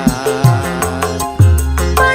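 Dangdut koplo band music, driven by low drum strokes that slide down in pitch, typical of the kendang, under wavering melodic lines.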